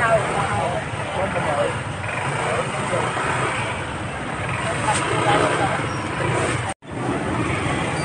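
Busy street market ambience: background voices talking over the steady noise of motor traffic. The sound cuts out completely for a moment near the end.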